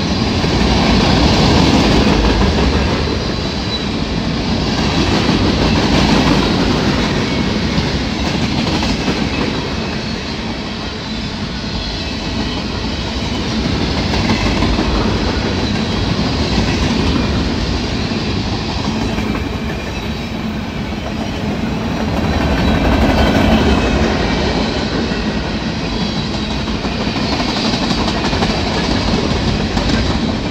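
Freight cars of a train rolling past at close range: a steady rumble and rattle of wheels on rail, swelling and easing every few seconds as the cars go by.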